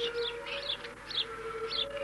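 Songbirds chirping, about five short high calls, over a steady low tone.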